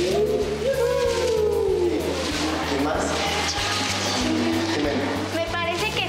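Several young voices singing a long, wavering 'uuu' that glides up and down in pitch, with newspaper strips rustling, over background music.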